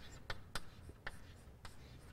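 Chalk writing on a blackboard: a quick, faint series of short chalk taps and scratches as the letters are stroked out.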